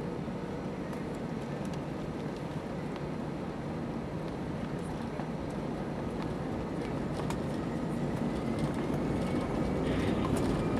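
Cabin noise of an Airbus A319 rolling on the runway: a steady rumble from the jet engines and the wheels on concrete. It grows louder over the last few seconds, with a faint rising whine as the engines spool up for the takeoff roll.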